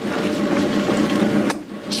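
Electric potter's wheel running with a steady hum, with one short click about one and a half seconds in.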